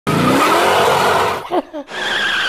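Dodge Charger Daytona's V8 accelerating hard with its tyres squealing, the engine note rising until it breaks off about one and a half seconds in. Two short, wavering chirps follow near the end.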